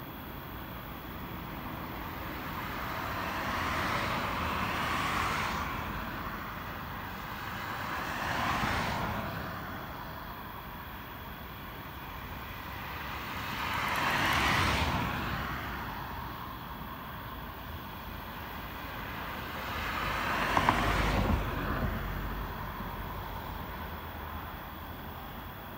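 Road vehicles passing by, one after another: four swells of tyre and engine noise, each rising and fading over a few seconds. The loudest passes are about halfway through and near the end.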